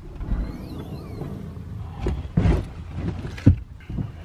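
A car's boot being handled: a few short knocks and thuds, the loudest near the end, over a steady low rumble.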